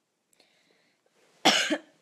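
A woman's single short cough about one and a half seconds in, loud against the quiet around it.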